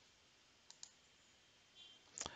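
Two faint clicks of a computer mouse in quick succession, about a second in, over near silence.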